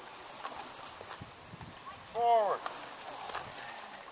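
A man's voice calling out a single short drawn-out drill command once, about two seconds in, its pitch rising and falling, with quiet outdoor background either side.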